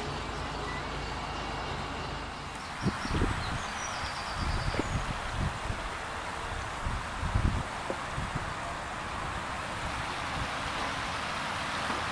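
Outdoor ambience with a steady hiss and wind gusting on the microphone in irregular low rumbles for several seconds in the middle.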